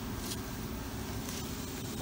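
Steady low background rumble, with a brief rustle of peach-tree leaves about a third of a second in as a hand reaches into the branches.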